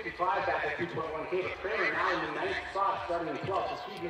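Several voices shouting and calling out in bursts, the cheering of coaches and spectators along a cross-country ski course.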